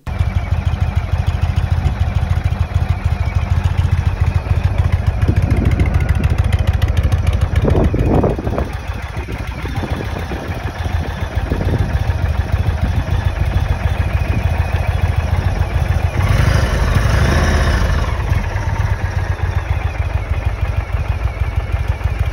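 Indian Springfield's Thunder Stroke 111 air-cooled V-twin engine running at idle with a low, lumpy beat. The note rises briefly about eight seconds in and is louder for a couple of seconds around sixteen to eighteen seconds in.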